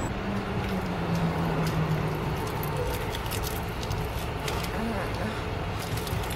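Steady outdoor traffic noise, with a low hum that fades after about two seconds and a few faint clicks.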